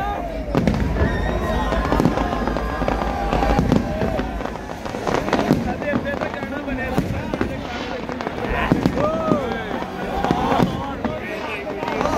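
Fireworks bursting overhead in a rapid, uneven series of bangs and crackles, with people's voices mixed in throughout.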